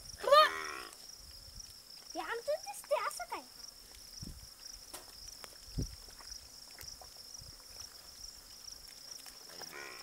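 A buffalo calf bawling once, loud and brief, about half a second in; a couple of seconds later come a few short voice-like calls. A steady high drone of insects runs underneath.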